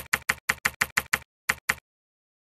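Typewriter keystroke sound effect: a run of sharp, evenly spaced clicks about six a second, a short pause, then two more clicks, stopping shortly before the end.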